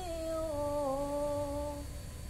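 A boy's voice reciting the Qur'an in melodic tilawah style, holding one long drawn-out note that dips slightly in pitch and stops just before the end.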